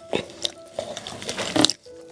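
Plastic-gloved fingers tearing apart very tender, oily soy-sauce-braised pork belly: a run of irregular wet, sticky clicks as the soft fat and meat pull apart.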